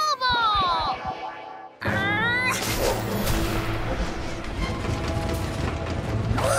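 Cartoon sound effects over the score: a falling magical swoop in the first second, then about two seconds in a sudden loud crash that runs on as a noisy rumble.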